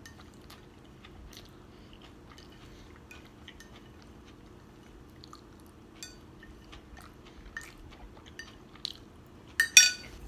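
Close-miked eating sounds: chewing and small mouth clicks, with a plastic fork tapping and scraping a dinner plate, over a steady low room hum. A louder cluster of clicks comes near the end.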